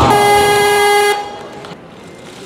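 Electronic competition buzzer sounding one steady, loud tone for about a second before cutting off abruptly, opening with a heavy thud.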